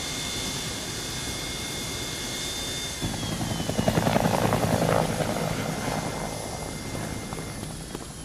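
Aircraft engines at an airport: a steady high whine over engine noise, the whine falling in pitch about three seconds in, then a louder rush of engine noise that swells and slowly fades.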